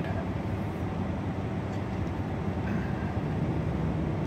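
A steady low machine hum in the background.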